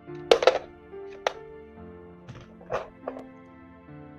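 Soft background music with sustained chords; about a third of a second in, a loud plastic clatter as a corded telephone handset is set down on its base, followed by a sharper click and a few softer knocks and bedsheet rustles.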